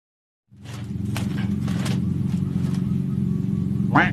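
After half a second of silence, a steady low engine hum cuts in suddenly and runs on at an even level, with a few faint clicks over it.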